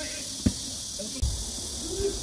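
A tennis racket striking the ball once about half a second in, a single sharp pop. Under it runs a steady high hiss, and a low rumble comes in a little past one second.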